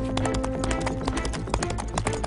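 Background music with a held low note, over many quick, irregular hoofbeats of a galloping horse.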